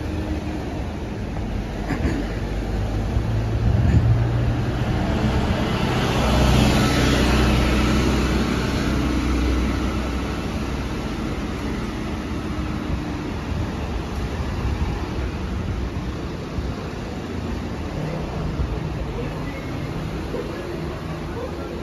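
Street traffic: motor vehicles drive past, one passing close, with its engine and tyre noise swelling to the loudest point about six to nine seconds in, then fading away.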